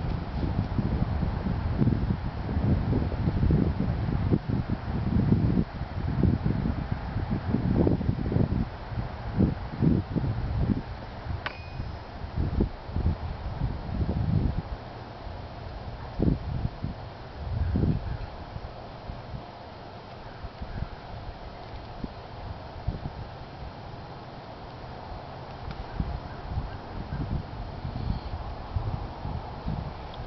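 Wind buffeting the microphone in low, irregular gusts, strongest through the first half and easing off after about eighteen seconds, with a single sharp click near the middle.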